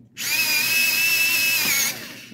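Small USB-powered electric pencil sharpener running as a pencil is pushed in: a steady motor whine with the grinding of the blade, starting just after the beginning and stopping near the end, its pitch dropping slightly just before it stops.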